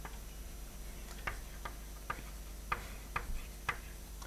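Chalk striking and tapping on a blackboard while writing: about six short, sharp clicks at uneven spacing, starting about a second in.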